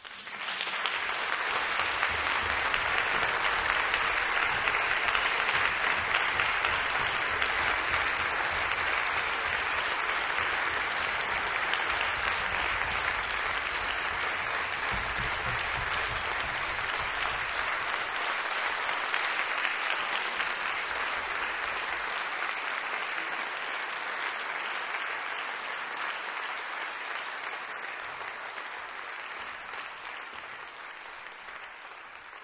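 Audience applauding, starting all at once and easing off slowly over the last several seconds.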